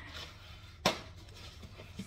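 A single sharp knock about a second in, an object striking a hard kitchen surface, over a faint low hum.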